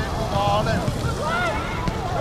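Wind buffeting the microphone, with short shouts and calls from people on an outdoor football pitch.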